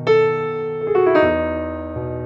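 Background piano music: a chord struck at the start, then a few more notes about a second in, each ringing and fading.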